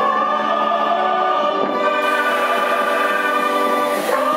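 A choir singing long held notes in harmony, the chord shifting just under two seconds in.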